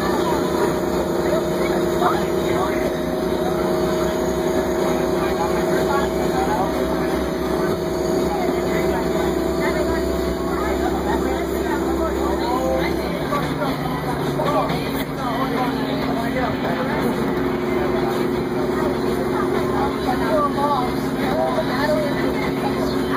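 Crown Supercoach Series 2 bus engine running steadily under way, heard from inside the passenger cabin. Its drone steps down to a lower pitch a little past halfway through. Passengers talk in the background.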